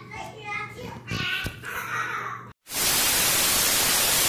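A small child's voice talking, then it cuts off and a loud, even TV-static hiss starts about two and a half seconds in.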